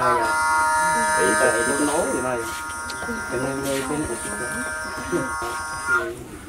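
A steady buzzing drone made of several even tones, loudest in the first half and then fading somewhat, with people talking over it.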